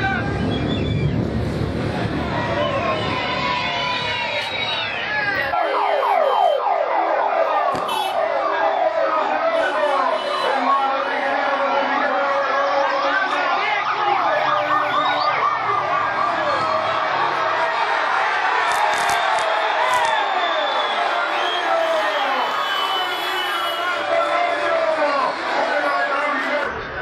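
Several escort motorcycle sirens wailing over one another, rising and falling continuously, over the voices of a large roadside crowd.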